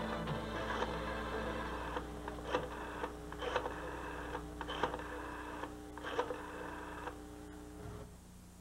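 Soft background music fading out under the clicks of a rotary telephone dial being turned and released, about one click every second.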